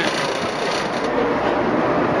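Vaporetto water bus's engine running steadily, with the rush of water and air as the boat moves.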